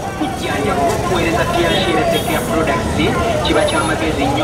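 Busy street ambience: many voices chattering at once over the rumble of motor traffic, with motorcycles passing.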